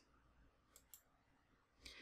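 Near silence with two faint, sharp clicks close together about a second in.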